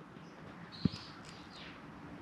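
Quiet handling at the oil filler of a small motorcycle, with a single short knock a little under halfway in and faint high squeaks around the middle, as a paper cup funnel is set in place for new oil to be poured.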